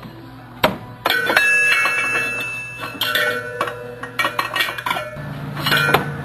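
Metal tools and parts clinking and clanking during engine work: a sharp click about half a second in, then a run of clanks with ringing metallic tones from about a second in.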